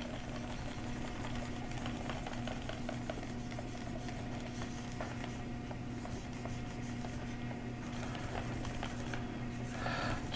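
Quiet, steady low electrical hum, with faint light scratching and tapping of a pen stylus on a drawing tablet as shading strokes are laid in.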